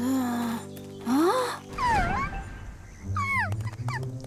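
Background music with three short, high animal calls that glide up and down in pitch, a cartoon young deer's cry.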